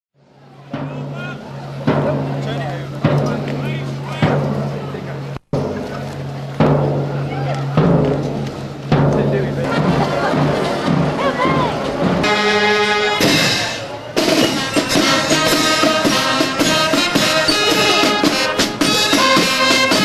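Street parade band music with a regular drum beat and brass, mixed with crowd voices. It fades in at the start and drops out briefly about five seconds in.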